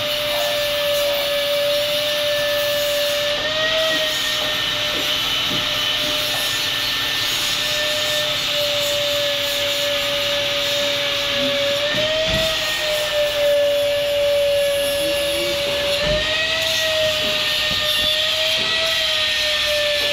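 Electric angle grinder running continuously, cutting steel pipe: a steady high whine over a grinding hiss, its pitch lifting briefly three times.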